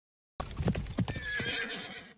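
Horse hooves clopping a few times and a horse whinnying, starting suddenly out of silence about half a second in.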